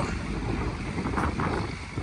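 Wind buffeting the microphone: a noisy low rumble that eases off toward the end.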